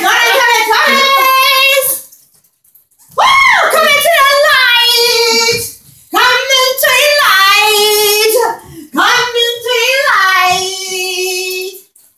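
A high voice singing unaccompanied in several drawn-out, swooping phrases with short pauses between them.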